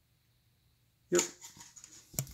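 Near silence, then a short spoken "yep" about a second in, followed by a few faint light ticks of a wooden craft stick against a plastic cup of thinned acrylic paint being stirred.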